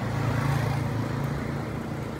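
Low steady hum with a light hiss from a Sharp QT-88 radio-cassette stereo's speakers, easing slightly toward the end.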